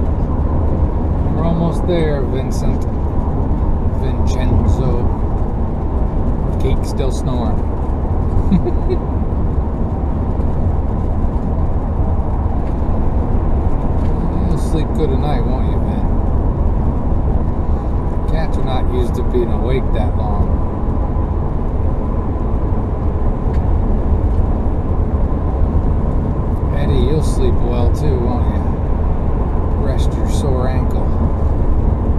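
Steady road and engine noise inside the cabin of a moving vehicle at highway speed, a constant low rumble with tyre hiss. Faint voice-like sounds come through several times over the noise.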